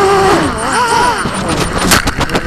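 HK Ghost FPV250 quadcopter's motors and propellers whining, heard through the onboard camera. The pitch wobbles up and down and slides lower as the quad goes out of control, then the first knocks of it hitting the ground come just before the end.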